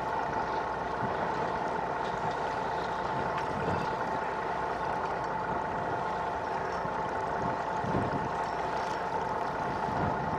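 A boat's engine idling steadily with a constant hum, over a low rush of wind and water.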